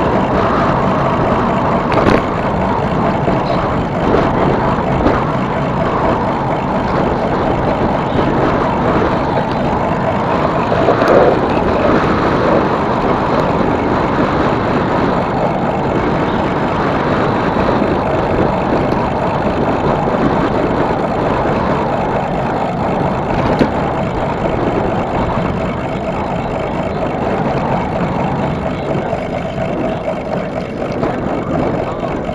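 Steady rushing wind on the microphone and tyre noise of an e-bike rolling along a paved trail, with a few brief knocks, the first about two seconds in.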